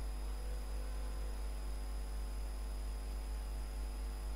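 Steady low electrical hum with a faint, thin high whine. Nothing starts or stops.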